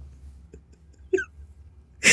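A man's short, stifled laugh: a single hiccup-like catch of the voice about a second in, among a few faint clicks.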